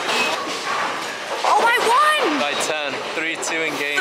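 People's voices in a bowling alley: calls that rise and fall in pitch from about a second and a half in, over the hall's background clatter.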